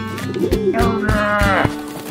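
Cartoon background music with a plucked rhythm. About a third of the way in, a cartoon character's drawn-out vocal grumble rises over it and drops in pitch as it ends.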